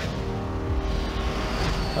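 Film trailer soundtrack between lines of dialogue: a steady low rumble with a held drone tone over it, no sudden hits.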